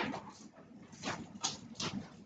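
Classroom background noise: four short rustling or scraping sounds in quick succession, the loudest right at the start.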